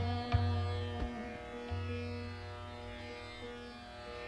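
Sitar playing in raga Ahir Bhairav: plucked notes about a third of a second and one second in, left to ring and slowly fade.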